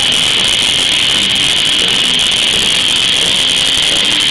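Heavy metal band playing live, loud distorted electric guitars, bass and drums in one dense, unbroken wash of sound.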